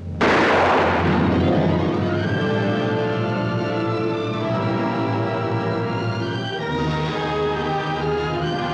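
A single gunshot, sharp and loud, ringing away over about a second, with orchestral film music swelling under it and carrying on in held chords that drop to deeper notes near the end.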